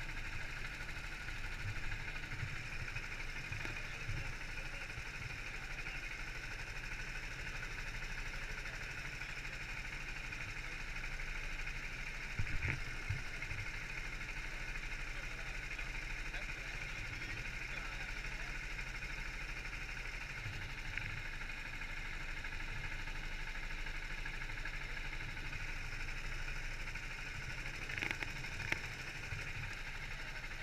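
Go-kart engine running, heard from a camera mounted on the kart itself: a steady drone with a few short sharp knocks about twelve seconds in and again near the end.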